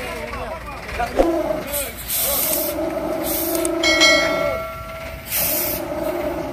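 Heavy dump truck's air brakes hissing in three separate bursts, over a steady two-pitched tone and voices.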